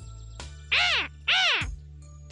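A cartoon parrot squawking twice, two short calls that each rise and then fall in pitch, over quiet background music.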